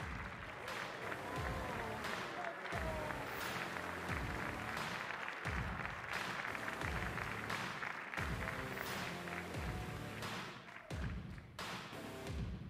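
Audience applauding over music with a steady, roughly once-a-second beat.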